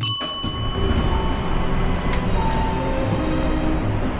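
Elevator car running with a steady rumble, starting with a short high ringing tone.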